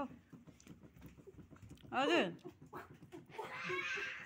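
A short voiced call about two seconds in, its pitch sweeping steeply up and back down, followed near the end by a fainter, hazier voiced sound.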